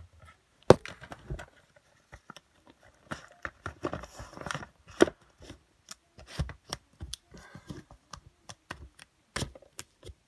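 Plastic DVD cases clacking and knocking against each other as they are pulled out and pushed back along a shelf, in irregular clicks with a little scraping between them.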